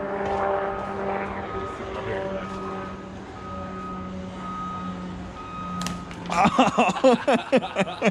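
Steady droning tones for the first several seconds, then loud, repeated hearty laughter from several men starting about six seconds in.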